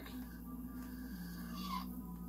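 Soft background music from a drawing-tutorial video playing through laptop speakers: a few sustained low notes that step down in pitch about halfway through.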